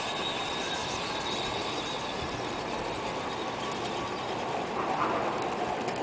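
Garden-railway model trains running on outdoor track: a steady mechanical rolling noise from the wheels and motors.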